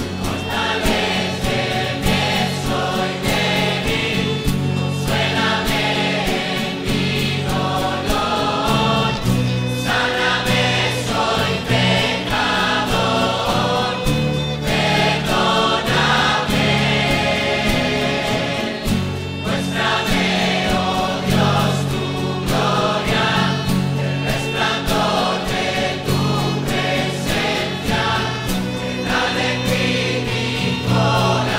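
Choral worship music: a choir singing a hymn-like song over a steady instrumental accompaniment.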